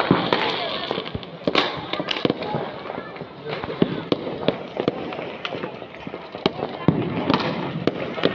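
Firecrackers going off in an irregular string of sharp pops and cracks, sometimes several in a second, with people talking underneath.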